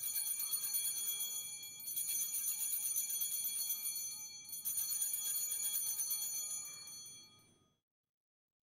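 Altar bells (Sanctus bells) shaken in three high, jingling rings of about two to three seconds each, marking the elevation of the chalice at the consecration.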